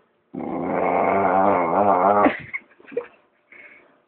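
Young dog vocalising in a long, wavering growl-grumble of about two seconds, followed by a couple of short, faint whines near the end.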